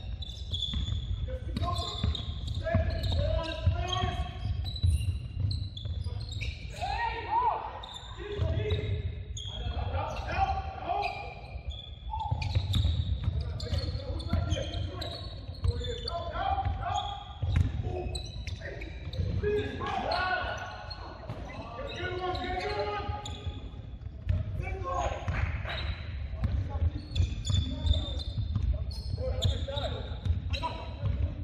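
A basketball bouncing on a hardwood gym floor during game play, with players' and onlookers' voices calling out indistinctly, echoing in the large gym.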